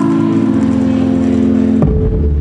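Dance music track at a held, melody-less passage: a sustained low drone, broken near the end by a sudden deep low hit.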